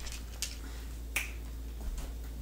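Two sharp clicks, a weaker one about half a second in and a louder, ringing one just after a second, over a low steady hum.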